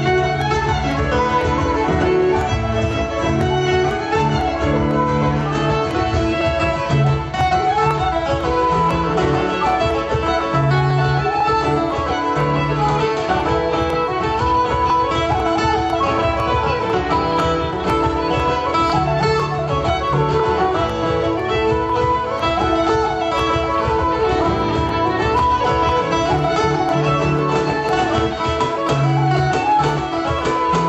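Live folk band playing a set of jigs without a break: fiddle carrying the melody over strummed guitar accompaniment.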